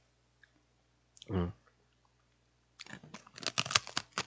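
A man's short closed-mouth "mm", then a run of quick, crisp crunching clicks near the end: chewing on crunchy food.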